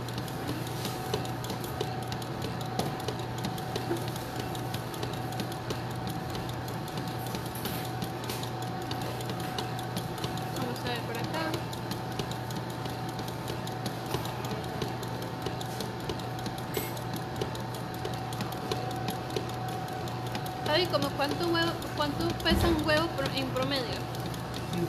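Electric stand mixer running steadily at lowered speed, whipping meringue; the beating goes on until the bowl has cooled. Voices talk briefly near the end.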